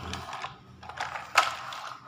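Light plastic clicks and rattles of toy vehicles being handled, with one sharper click about one and a half seconds in.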